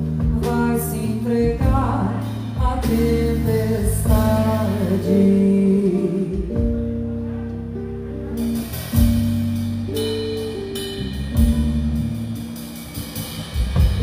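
Live band music: a woman singing, with guitar and a drum kit playing snare and rimshot strokes.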